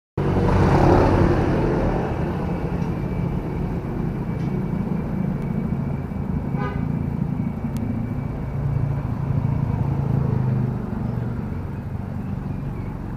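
A motor scooter passes close by, its engine loudest in the first two seconds, and a steady low engine hum carries on after it. A short horn beep sounds about six and a half seconds in.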